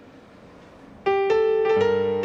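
Faint background hiss, then about a second in a piano suddenly begins the song's intro, playing a run of notes with a lower bass note joining shortly after.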